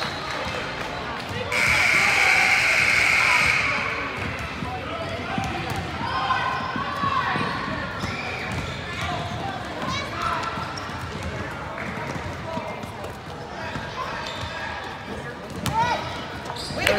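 A gym scoreboard buzzer sounds one steady note for about two seconds, followed by spectators' voices and a basketball bouncing on the hardwood, echoing in the large hall.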